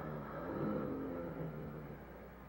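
A low, growling groan from the deformed creature locked in the closet. It swells to its loudest a little before a second in and then fades, over the steady hum and hiss of an old film soundtrack.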